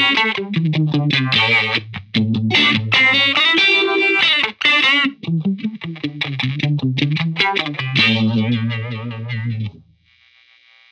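Strat-style electric guitar played through a Farm Pedals Fly Agaric four-stage, vibe-voiced phaser with its second LFO turned up full: strummed chords and picked notes with a wavering, swirling sweep. The last chord rings for about two seconds and stops just before the end.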